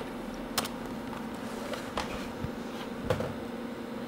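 Steady machine hum with a few single computer keyboard keystrokes spaced about a second apart.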